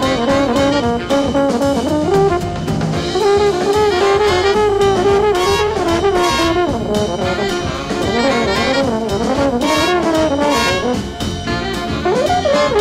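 Jazz big band playing live: the brass section plays full, with the drum kit keeping a steady beat underneath.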